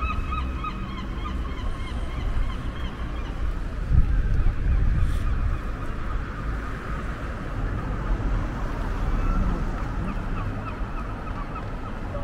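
Series of short, honking bird calls, heard in the first couple of seconds and again in the second half, over a steady low rumble of street noise. A brief low thump comes about four seconds in.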